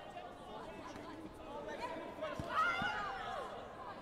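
Indistinct chatter of several voices in a busy hall. A louder voice with sliding pitch stands out a little after two seconds in, along with a couple of dull thuds.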